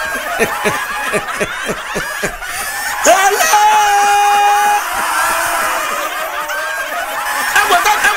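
A person laughing in a quick run of short 'ha' bursts for about three seconds, then a single held high vocal note lasting just over a second, followed by more laughing and voice sounds.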